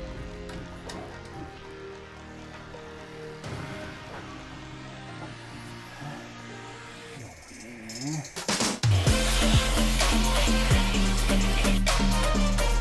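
Background music: soft held notes at first, then about nine seconds in a much louder part with a heavy bass and a steady beat comes in.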